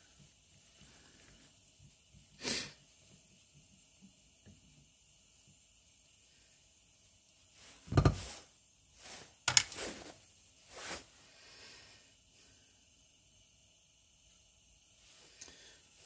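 Handling sounds of small metal lantern parts on a workbench: a sharp click about two and a half seconds in, a louder knock at about eight seconds, then a few lighter clicks and taps.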